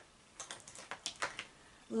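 A quick run of light plastic clicks and taps, about half a dozen between half a second and a second and a half in, as makeup highlighter compacts are handled and set down.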